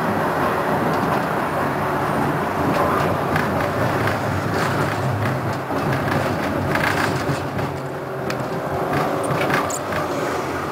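Konstal 105Na tram running along street track, heard from inside: a steady hum and wheel-on-rail noise with scattered clicks and knocks, which come more often in the second half.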